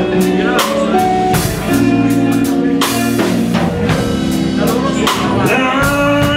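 Electric blues band playing live: two electric guitars, electric bass and a drum kit, with regular drum hits under sustained guitar notes. Bending, wavering notes come in near the end.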